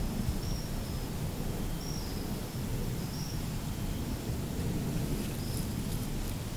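Outdoor woodland ambience: a steady low rumble with a few faint, short high-pitched chirps scattered through it.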